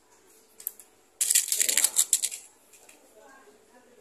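A PCP air rifle being fired and handled: a faint click, then a little past the first second a loud, rapid clatter of sharp clicks lasting about a second.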